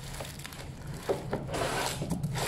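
Flat shelf board of a wooden kitchen rack being slid out of its cardboard box, rubbing and scraping against the cardboard with a few light knocks. The scraping becomes continuous about halfway through.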